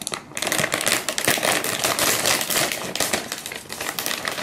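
A foil-lined plastic snack bag of sweet-potato chips being torn open and handled, a busy run of crinkling and crackling that starts about a third of a second in.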